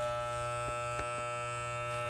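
Electric hair clippers with a guard comb running with a steady hum while cutting along a child's neckline. A couple of faint clicks come about a second in.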